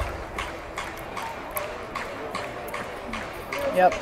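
Close-up chewing of roasted corn on the cob coated in crushed hot Cheetos: crunchy bites and mouth clicks about two a second, ending in a satisfied "mm".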